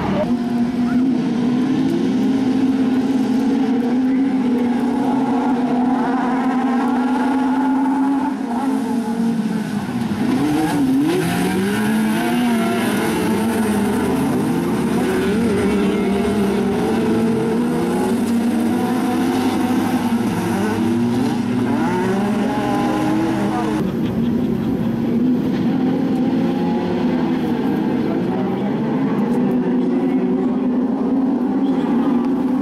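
Several autocross race car engines running hard on a dirt track. Their pitch holds for the first several seconds, then repeatedly rises and falls as the cars accelerate, shift and brake.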